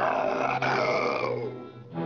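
Cartoon lion roaring, a long breathy blast that trails off about a second and a half in, over background music.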